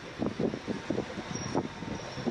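Steady mechanical hum of brewery machinery, with indistinct talking over it.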